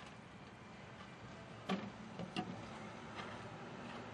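A show-jumping horse going over a fence, with three sharp knocks close together about two seconds in, the first the loudest, and a fainter one after.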